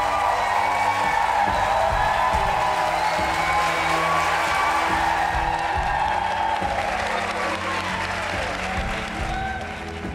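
A small group of people clapping over background music; the applause dies down near the end, leaving the music.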